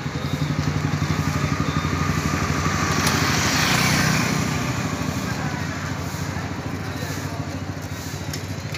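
Small motor-vehicle engine running with a steady, rapid low pulse, in street traffic. A passing vehicle swells up and fades about three to four seconds in.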